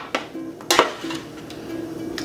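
A spatula scraping roasted vegetables off a metal sheet pan, with a few light clicks and one sharp clink about three-quarters of a second in.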